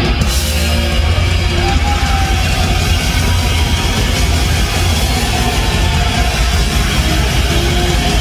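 Loud live heavy metal band playing: distorted electric guitar and a drum kit, heard from close in front of the stage.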